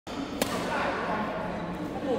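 A single sharp smack of a badminton racket striking a shuttlecock, about half a second in, with voices in the hall around it.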